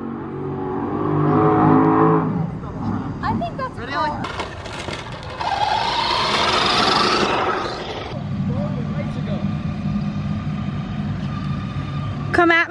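Distant tractor-pull engines droning, building over the first couple of seconds and holding steady in the second half. About halfway through, a radio-controlled car's motor and tyres whir past close by with a rising whine.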